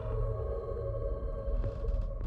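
Ominous horror-score drone: several steady held tones over a continuous low rumble, with a few faint clicks near the end.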